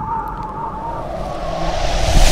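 Soundtrack transition effect: a wavering high tone over a hiss-like swell that builds steadily louder toward the end, like a rising whoosh.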